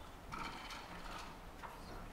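Faint, scattered clicks and light knocks of handling at a lectern, with a soft rustle in the first second.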